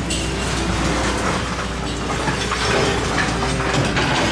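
A train running with wheels clattering over rail joints: a steady rush of rail noise with faint clicks.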